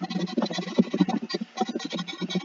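Fast typing on a computer keyboard: a dense, quick run of key clicks, many keystrokes a second.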